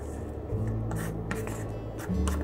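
Background music with low held notes, over light irregular scraping and rustling as a spoon scoops fresh hijiki seaweed from its plastic tray into a pot of simmering broth.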